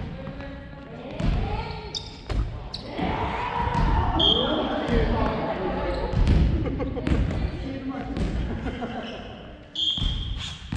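Family badminton rally on a wooden gym floor: sharp racket-and-shuttle hits and footfalls echo through the hall. Voices talk throughout, and a few short, high squeaks cut in, the longest about four seconds in.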